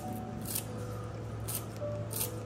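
Kitchen scissors snipping through fresh herb stems: three crisp snips, one near the start, one about half a second in and one about one and a half seconds in.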